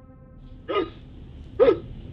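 Two short, sharp vocal yelps about a second apart, the second louder, after a low drone fades out at the start.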